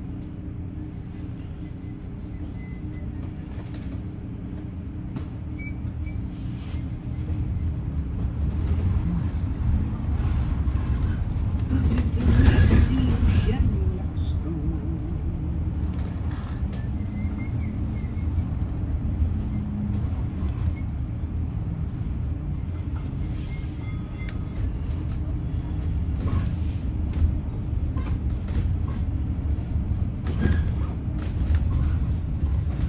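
Cabin noise of a battery-electric Alexander Dennis Enviro400EV double-decker bus: a low rumble with a steady hum while it stands, growing louder from about six seconds in as it moves off along the street. About twelve seconds in there is a loud rushing swell, the loudest moment, as something big goes by close alongside.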